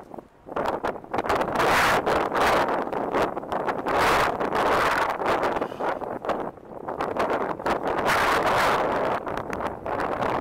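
Wind buffeting the microphone in uneven gusts, with brief lulls about half a second in and again around six and a half seconds.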